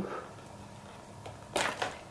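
Handling noise from hands working a cable connector loose inside an opened 2006 iMac. It is faint at first, then one short, sharp rustle comes about one and a half seconds in.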